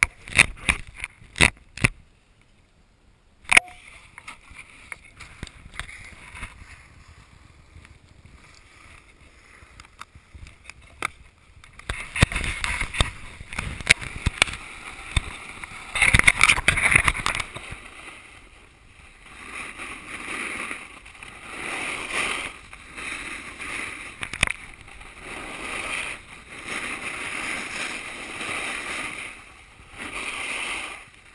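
Snowboard sliding and turning on packed snow: a rushing scrape of the board's edge that swells and fades with each turn, starting about twelve seconds in after a few sharp knocks and a quiet stretch.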